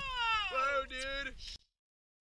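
An excited boy's high-pitched, wordless cry that falls in pitch, with a lower voice joining about half a second in. The sound cuts off abruptly near the end into dead silence.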